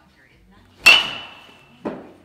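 A baseball bat hitting a ball: one sharp ping a little under a second in, with a high metallic ring that dies away over about a second, typical of an aluminium bat. A second, softer knock follows near the end.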